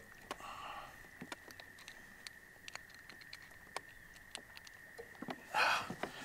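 Faint, scattered clicks and taps of a freshly caught crappie and its line and jig being handled by hand, over a faint steady high whine, with a short rush of noise near the end.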